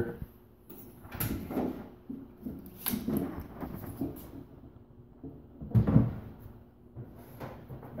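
Knocks and clunks of a stainless countertop microwave being picked up and handled as it is lifted toward a shelf, with a louder low thump about six seconds in.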